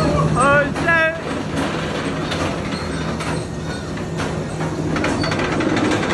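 Steel roller coaster train running along its track with a steady low hum and repeated clattering. People yell and whoop in the first second.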